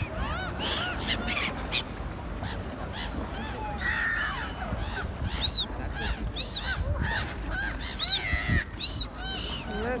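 Gulls calling over water: a string of short, harsh arched cries that come thickest in the second half, over a steady low rumble.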